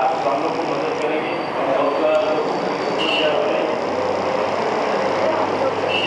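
Indistinct speech in a room, over a steady background noise.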